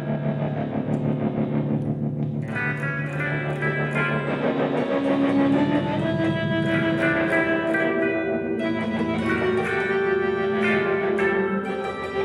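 Two electric guitars, one a hollow-body archtop, played together through effects pedals and amplifiers: layered, sustained notes and chords that shift every second or two.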